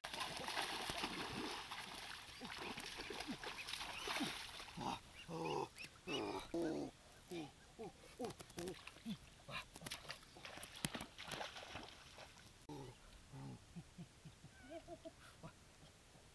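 Splashing through shallow muddy water, then white domestic ducks quacking over and over as they are grabbed and held by the neck. The calls are loudest from about a third of the way in and thin out to a few quieter quacks near the end, with a few sharp clicks in between.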